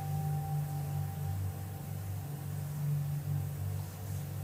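Soft ambient background music: low held notes that swell and fade slowly, with a higher held tone fading out within the first second or so.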